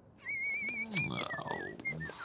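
Cartoon soundtrack: a high warbling, whistle-like tune with a fast vibrato starts about a quarter second in. Under it runs a character's grunting, sliding vocal noises.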